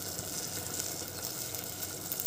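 Steel pot of tomato rasam cooking on the stove, giving a quiet, steady sizzle.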